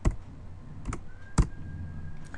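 Computer keyboard keystrokes: three separate sharp key clicks, including the Enter key sending a typed query to run.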